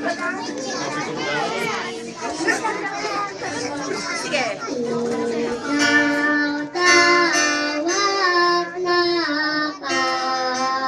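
A group of young children singing together, accompanied by a guitar, over some background chatter. The singing becomes clearer and stronger about six seconds in.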